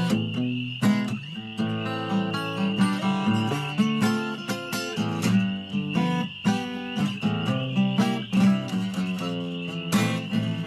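Steel-string acoustic guitar played solo: a busy run of strummed chords and picked notes with sharp, frequent attacks.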